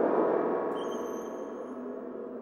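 Contemporary chamber-ensemble music: a sudden loud, dense attack that slowly dies away. Thin, steady, high-pitched tones enter about a second in and stop near the end.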